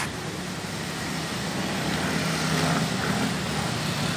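Street traffic: motor scooters and cars passing on the road in a steady engine hum that grows a little louder midway.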